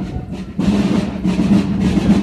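Drums of a marching procession band playing, loud and steady, with a short dip just after the start.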